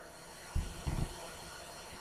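A quiet pause filled with faint steady hiss, with two soft, low thumps about half a second and a second in.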